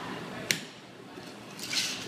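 A single sharp clink about half a second in as a pint glass is knocked into the mixing tin to close the shaker, followed by a faint brief rustle near the end.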